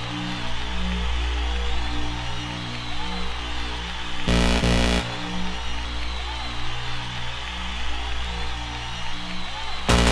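Intro of a 1990s Spanish makina dance track: a held synth bass under a repeating synth riff, with no drums. A short burst of noise comes about four seconds in, and the beat kicks in right at the end.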